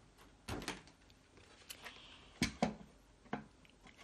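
About five light knocks and clicks as a We R Memory Keepers mini guillotine paper cutter, a plastic trimmer, is turned over and set down on a wooden table.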